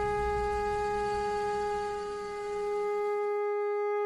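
Dramatic background-score sting: a single long horn-like note held at one steady pitch, with a low rumble beneath it that fades out about three seconds in.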